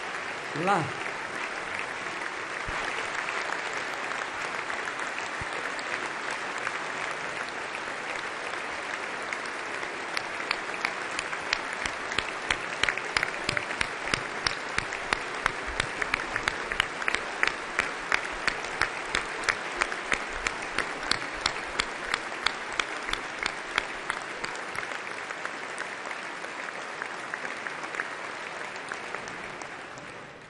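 A large assembly of parliamentarians applauding at length. From about ten seconds in, the clapping falls into a steady rhythmic beat in unison, then loosens and fades near the end.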